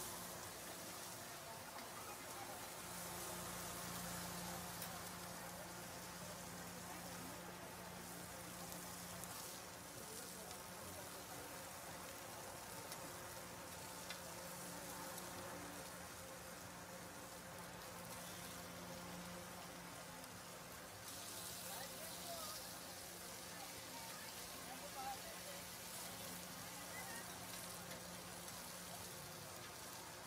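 Meat cutlets sizzling in oil on a flat-top griddle, a faint steady frying hiss with a low, even hum underneath.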